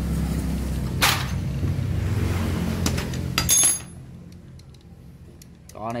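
Metal engine parts clinking as a motorcycle cylinder head and its rocker arms are handled: a sharp click about a second in and a ringing metallic clink at about three and a half seconds, then small ticks. A low rumble of nearby road traffic runs underneath and fades out around the loud clink.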